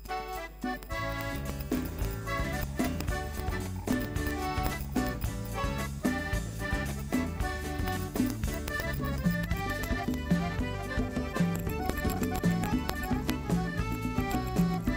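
Live folk band starting an instrumental introduction about a second in, with electric bass, guitars and hand-played congas keeping a steady rhythm.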